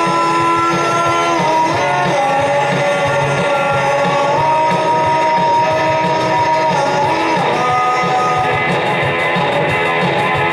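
Rock music with electric guitar: sustained chords that change every one to three seconds over a steady beat.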